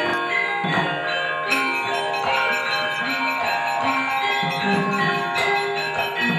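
Javanese gamelan ensemble playing: struck bronze metallophones and gongs ringing in overlapping held tones, with new strikes at a steady pace and short low drum thuds.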